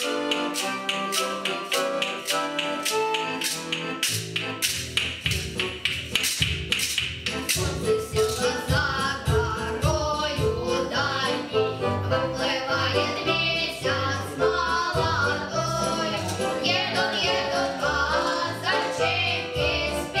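Accordion playing a Russian folk song with evenly spaced clacks of wooden folk percussion. About eight seconds in, boys' voices come in singing the tune together over the accordion.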